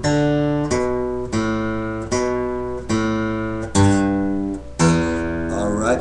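Acoustic guitar playing a slow cascading single-note lick on the low strings, about one plucked note every 0.7 seconds, each left ringing. The playing stops near the end.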